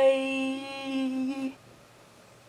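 A woman's voice holding one long, steady note, the drawn-out end of a sung-out 'bye', cutting off about one and a half seconds in. Faint room hiss follows.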